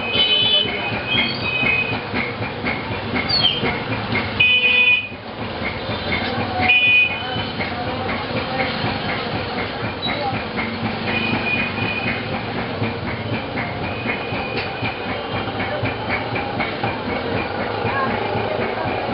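Steady background din with several short horn-like toots, the loudest about half a second, four and a half and seven seconds in.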